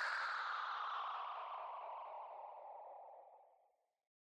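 A whooshing sound effect at the close of the intro music, sliding down in pitch as it fades out, and gone just before the end.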